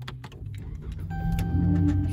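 Chrysler 300 engine started with the push button: a few clicks, then the engine cranks and catches, running up louder about a second in. The car has accepted the proximity key once it is out of the blocking pouch.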